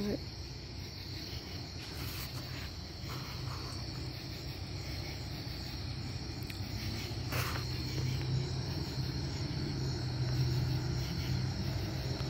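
Crickets chirping steadily in a continuous high-pitched chorus. Under them, a low rumble grows louder over the last few seconds.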